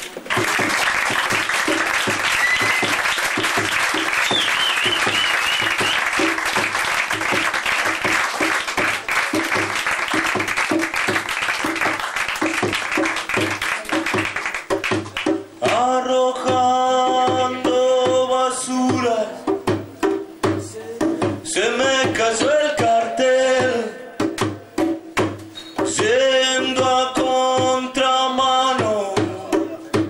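A live band plays in a bar, loud. For the first half there is fast, dense drumming with cymbals. From about halfway, a melody of long held notes with bends comes in over the beat.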